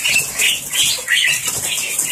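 A house full of caged white mynas (Bali and black-winged mynas) chattering in short, repeated high calls, with wings fluttering.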